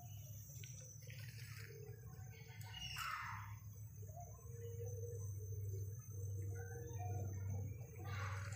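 Steady high-pitched chorus of forest insects at dusk, with footsteps rustling through leaf litter and undergrowth; one louder rustle of leaves comes about three seconds in.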